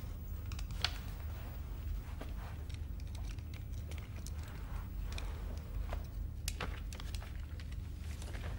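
Steady low rumble of room tone with a few faint clicks and rustles of small movements, the clearest about a second in and again late on.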